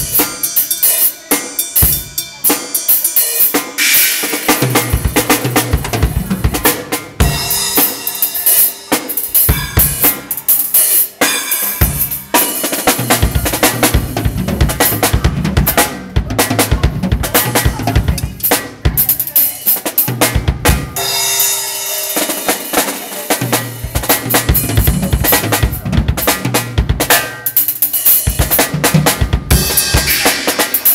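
Acoustic Tama drum kit played without a break: a dense run of strokes on snare, toms and bass drum, with stretches of ringing cymbal.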